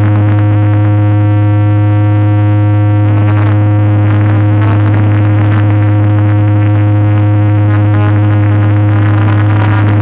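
A DJ sound system blasting a deep, steady synthesizer bass tone at very high volume, held without a break through the whole stretch, with a harsh noisy edge over it.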